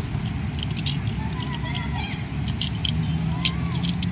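Small plastic clicks from the joints of a Transformers Megatron action figure as its legs and body are turned, over steady background noise.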